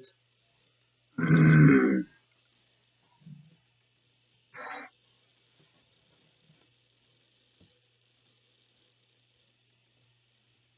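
A man makes one loud throat noise lasting under a second, about a second in, then a shorter, fainter one near the middle.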